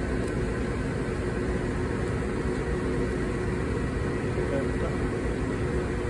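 Steady machinery hum with a few constant tones, unchanging throughout.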